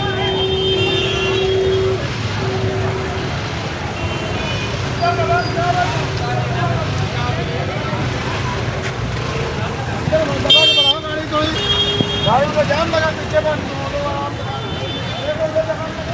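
Busy street traffic: engines running with vehicle horns honking on and off, and people's voices nearby. A sharp, high-pitched horn blast about ten seconds in is the loudest sound.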